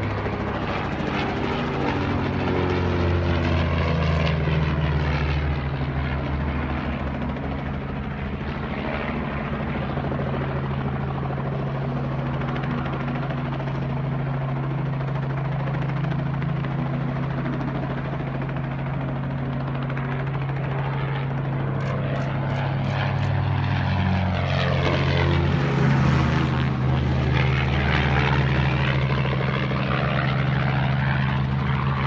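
Pitts Special S-2A aerobatic biplane's engine and propeller running at power as it flies aerobatics overhead, the note shifting in pitch as it manoeuvres and passes. It swells louder about four seconds in and again near the end.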